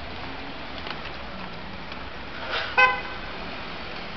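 Steady city street traffic noise, with one short car horn beep a little under three seconds in.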